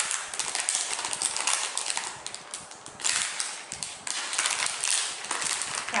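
Clear plastic packaging crinkling and crackling as hands handle and open it: a dense, uneven run of small crackles.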